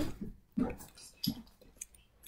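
Silicone pop-it bubbles on a fidget spinner being pressed, giving a few soft, separate pops, the main two about two-thirds of a second apart, with faint clicks near the end.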